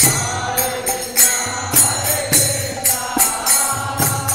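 A devotional kirtan: a group chanting, with a lead voice on a microphone, while small hand cymbals (karatalas) keep a steady beat of about two strokes a second, each stroke ringing on.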